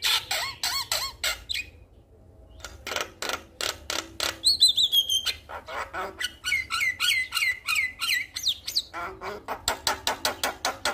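A male Javan myna singing vigorously: rapid clicking chatter mixed with whistled notes, with a brief pause about two seconds in. Near the middle comes a loud run of falling whistles, then a string of repeated notes.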